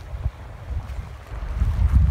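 Wind buffeting the microphone: an uneven low rumble that grows louder in the second half.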